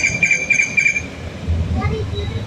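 A quick run of short, high-pitched electronic beeps at one steady pitch, about five in the first second, most likely the fuel pump's keypad beeper. A low rumble comes in near the end.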